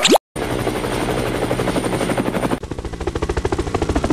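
Helicopter rotor sound effect: a fast, steady chopping beat, dubbed over a toy rescue helicopter as its rotor spins up, after a brief rising swoop at the very start.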